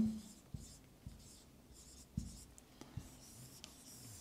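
Dry-erase marker writing on a whiteboard: a run of faint short strokes as a word is written and boxed, with a few soft knocks against the board, the clearest about two seconds in.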